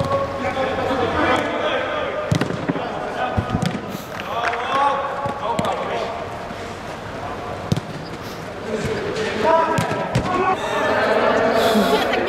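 Footballers shouting and calling to each other, with several sharp thuds of the ball being kicked and bouncing on artificial turf, echoing inside a large air-dome hall.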